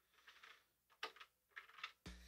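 Near silence broken by a few faint clicks, one about a second in and several close together near the end: fingers pressing the buttons of an Elektron Digitone synthesizer.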